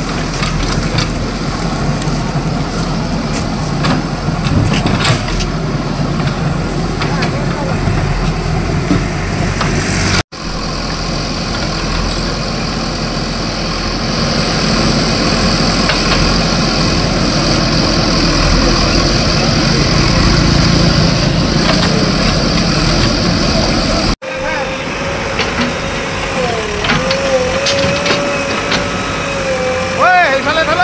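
JCB backhoe loader's diesel engine running as the backhoe arm digs into earth, the sound broken by two abrupt cuts. A wavering whine joins in over the last few seconds.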